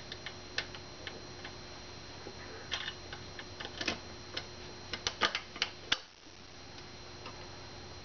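Scattered sharp metal clicks and clacks from a parking meter's lock and housing being worked by hand with its key, ending in a quick run of clicks a little past five seconds in as the housing is unlatched and swung open.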